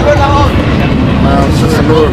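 Drag-racing cars running at full throttle down the strip, a steady loud rumble, with people talking close by.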